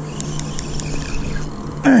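Boat's outboard motor idling with a steady hum, with a few faint clicks from the spinning reel in the first half as a hooked gar is reeled in.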